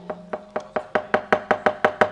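Rapid, even rapping of the dalang's cempala on the keprak plates and wooden puppet chest (kotak), about seven sharp knocks a second, marking time between lines of dialogue in a wayang kulit performance.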